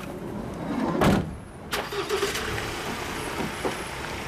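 A van's sliding side door slams shut about a second in, followed by a sharp click, over steady street noise.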